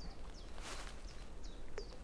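A small bird chirping repeatedly in short, high calls, faint against an outdoor background, with a brief rustle about two-thirds of a second in.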